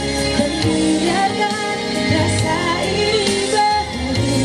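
A woman singing live into a microphone, with instrumental accompaniment behind her voice.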